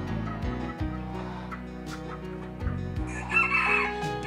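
A rooster crowing once, loudly, near the end, over background music.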